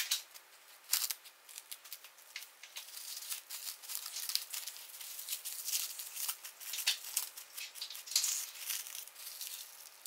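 Plastic cling wrap crinkling and crackling in irregular bursts as gloved hands wrap it around a dried persimmon and twist it tight.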